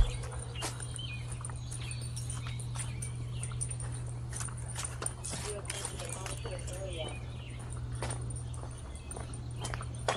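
Footsteps and scattered sharp clicks from walking two small dogs on leashes, over a steady low hum.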